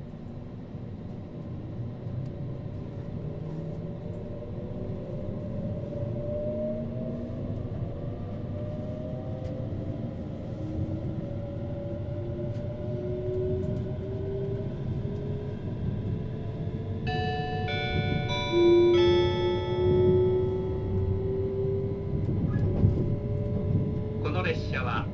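Interior of a JR East E657-series electric limited express accelerating away from a station: a rumble of running gear with the traction motors' whine gliding steadily upward in pitch as speed builds. About seventeen seconds in, a short multi-note electronic chime sounds over it: the on-board tone that comes before a passenger announcement.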